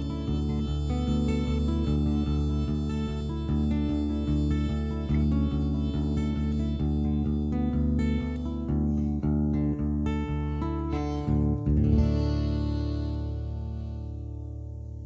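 Acoustic guitar and harmonica playing the closing instrumental of a folk song. Near the end a final chord is struck, rings out and fades.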